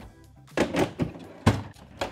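Three sharp knocks and clunks as a plywood drawer carrying a plastic assortment case is pushed shut and the next drawer is pulled out on its drawer slides.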